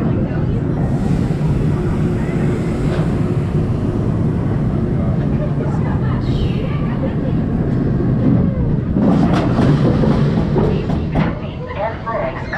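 Apollo's Chariot, a Bolliger & Mabillard steel roller coaster, with its train rolling along the track toward the station in a steady low rumble of wheels on steel rail, heard from the front seat. About nine seconds in comes a stretch of rapid clattering as the train runs through the brakes and into the station.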